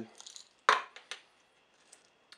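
Small plastic prescription pill bottle and cap being handled: a few light clicks, then one sharp plastic click about two-thirds of a second in and a softer one shortly after.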